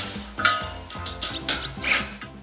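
Several short metallic clinks and rattles, about four in two seconds, from parts of a galvanized steel-tube greenhouse frame being handled and fastened, over steady background music.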